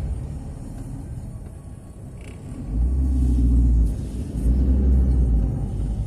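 Car engine and road rumble heard from inside the closed cabin of a moving car, growing much louder and deeper about three seconds in.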